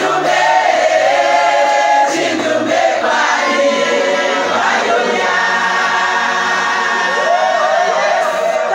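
A group of women singing a gospel song together in chorus, with long held notes in the middle.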